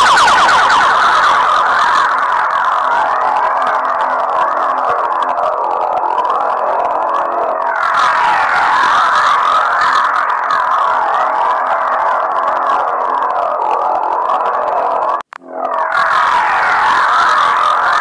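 A loud wailing sound of several overlapping tones sweeping slowly up and down, like sirens, broken by a short gap about fifteen seconds in.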